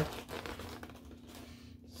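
Quiet room tone with a faint steady hum, in a pause between words.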